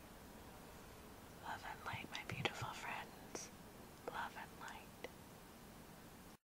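A woman whispering two short phrases, the first about a second and a half in and the second about four seconds in, with a few small clicks among the words.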